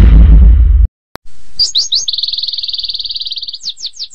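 A deep rumbling thud that cuts off after about a second, then a small songbird chirping: a few quick sweeping notes followed by a fast, even trill, repeated once and fading.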